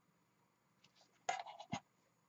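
A steel ruler scraping and sliding across paper as it is lifted off a paper trimmer: a brief scrape and rustle about a second in, loudest at first, ending in a sharp knock.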